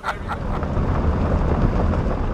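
Steady low rumble of wind and road noise from a moving car, with no let-up.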